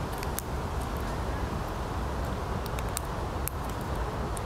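Eurasian red squirrel gnawing and cracking pine-nut shells with its teeth: a scattering of short, sharp clicks near the start and again in the second half. A steady low rumble runs underneath.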